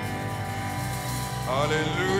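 Live church worship music: sustained chords over a steady bass. About one and a half seconds in, a melody line slides upward into a held note.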